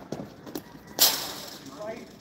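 A single sharp crack about a second in, a cricket bat striking the ball, with a brief ringing tail in the netted arena. A few lighter knocks before it and voices calling out near the end.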